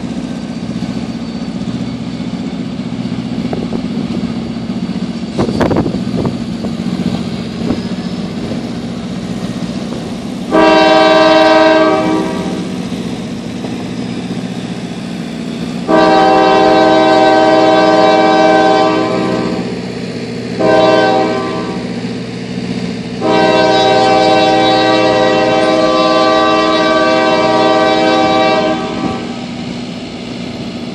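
Diesel locomotive's air horn sounding the grade-crossing signal: two long blasts, a short one, then a long one, over the steady running of the locomotive's diesel engine as the train pulls away. A brief knock about five seconds in.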